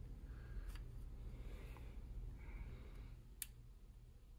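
Two faint small clicks of steel tweezers on the metal C-clip of an AR dust cover rod, the sharper one near the end, over a low room hum.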